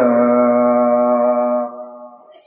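A man's voice chanting a Quranic verse in melodic recitation, holding one long steady note that fades away near the end.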